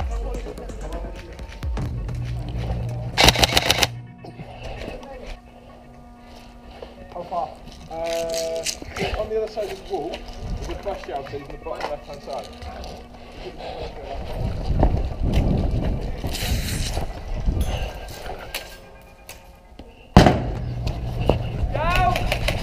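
Airsoft skirmish with scattered bursts of airsoft gunfire and indistinct voices. About two seconds before the end comes a sudden loud bang: an airsoft grenade going off.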